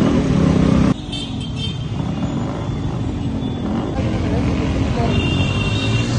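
Scooter and motorcycle engines of a riding convoy, with heavy rumble for the first second. After a sudden drop, the engine noise goes on quieter, with a few short high beeps and voices.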